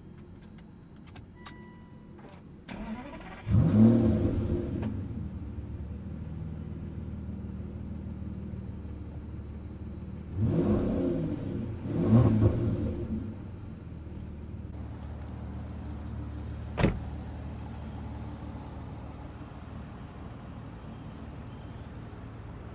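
Aston Martin V12 Vantage S's naturally aspirated V12 starting: a few faint clicks and chimes, then it catches a few seconds in with a rising flare of revs and settles into a steady idle. The throttle is blipped twice a little after the middle, and a single sharp click comes later while it idles on.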